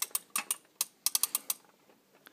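A rapid run of light, sharp clicks and taps, about a dozen in a second and a half, then stopping.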